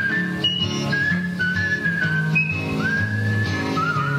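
A person whistling a melody over acoustic guitar and bass accompaniment, sliding up into some of the notes.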